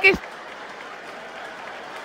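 Audience applause, a steady even patter lasting about two seconds and cutting off suddenly near the end.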